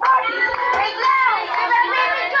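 Children's voices: high-pitched, excited calling and chatter, with several voices overlapping.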